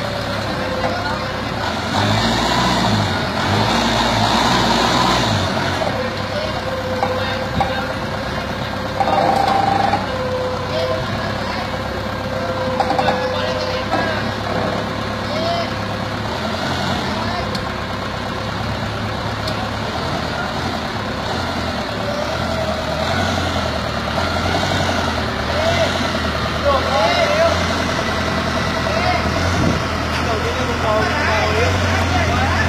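Forklift engine running steadily while it handles pallets at a shipping container, with people talking in the background.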